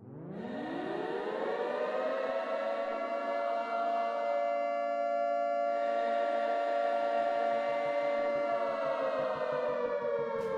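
An air-raid style siren winding up over about a second and a half, then holding a steady wail that sags slightly lower near the end.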